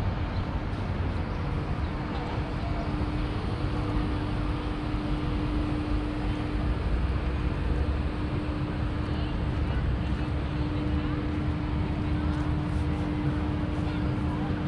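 Busy harbour-front street ambience: a steady low rumble with a constant droning hum underneath, and voices of passers-by.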